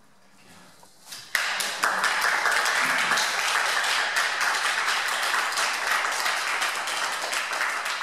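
A small group of people applauding, starting suddenly about a second in and going on steadily.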